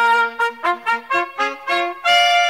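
Short brass fanfare: a held note that ends just after the start, then a quick run of short, separate notes.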